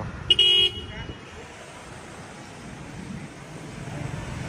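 A single short vehicle horn toot about a third of a second in, a steady flat-pitched beep lasting under half a second, followed by a low, steady hum of street traffic.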